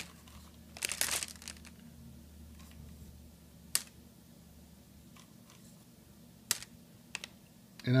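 Hard-shelled M&M's being picked out of a styrofoam bowl by hand: a short rustle about a second in, then a few sharp single clicks as candies are moved and dropped.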